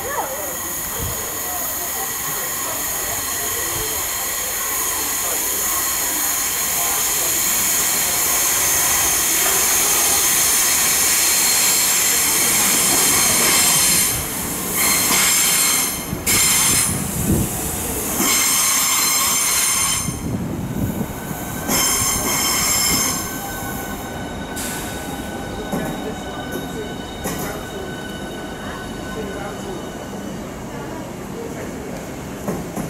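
Southeastern Class 395 Javelin electric multiple unit running into the station and braking, with a loud, steady high-pitched whine and wheel squeal that builds for the first dozen seconds. Midway the sound breaks up with several sudden drops, then settles at a lower level as the train slows to a stand.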